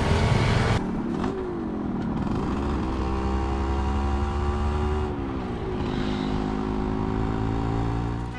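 Music cuts off under a second in, giving way to a small-capacity motorcycle engine running on the move. Its pitch dips and climbs back at about one to two seconds in, and falls again about five seconds in.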